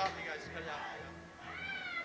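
Stage noise between songs: faint low instrument tones, then about a second and a half in a high note that slides up and back down, meow-like.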